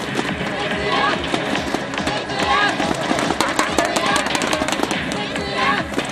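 A voice with music behind it, and a patter of sharp clicks through the middle.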